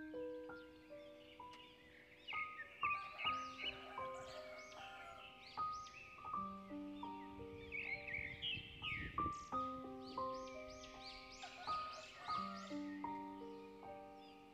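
Background music: slow, ringing keyboard notes in a gentle melody, with a busy layer of short, high warbling chirps over it.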